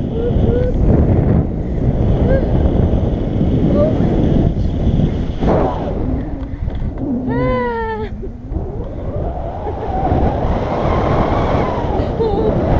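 Wind rushing and buffeting over the action camera's microphone in paragliding flight, a loud, steady rumble. About seven and a half seconds in, a short cry from a voice rises above it.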